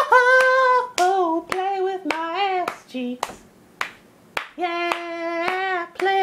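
A voice singing long held notes without clear words, the pitch sliding up and down between phrases, with sharp hand claps falling irregularly between and over the notes.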